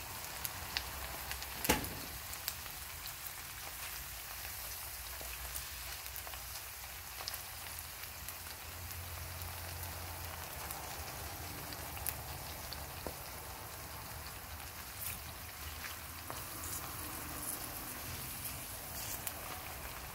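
Eggplant slices frying in olive oil in a stainless steel pan: a steady sizzle with scattered small crackles and pops. One sharper knock sounds about two seconds in.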